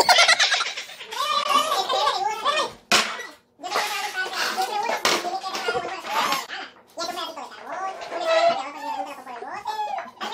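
Several people's voices talking over one another, with short breaks about three and a half and seven seconds in.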